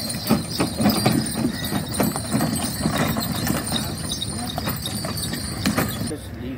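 Two-ox bullock cart moving across a field: irregular hoof steps of the oxen and the knocking and rattling of the wooden cart as it rolls over rough ground.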